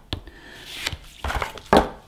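Handling sounds as a clear plastic battery adapter tube is set down on a tabletop: a brief rustle, then a few light knocks, the loudest near the end.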